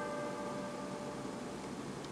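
The last note of a chiming jingle ringing out and fading away within about a second, leaving a faint steady hiss.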